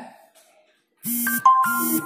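A short electronic melody of a few stepped, held notes over a steady low tone, sounding in two quick bursts about a second in.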